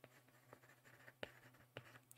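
Near silence broken by a few faint ticks of a stylus on a tablet screen as words are written.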